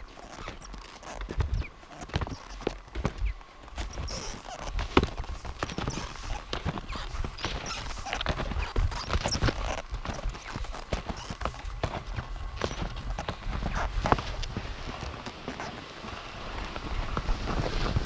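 Crunching and swishing of touring skis climbing through snow, with irregular clicks from ski poles planting into the snow, over a low rumble.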